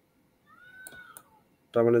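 A faint, short, high-pitched call, under a second long, that rises and then falls in pitch, with two soft clicks during it.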